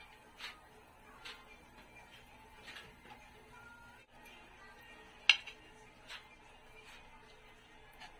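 Hot oil crackling and spitting faintly around dried herring frying in a nonstick pan, in scattered small pops, with one sharp click about five seconds in.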